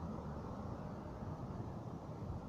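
Steady low rumble of engine and tyre noise from a car driving slowly around a roundabout at some distance.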